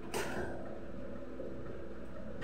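One sharp knock from kitchen work at the counter just after the start, over a steady low hum.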